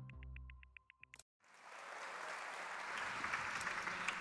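Electronic intro music with a fast ticking beat fades and stops about a second in; after a brief silence, audience applause builds and carries on.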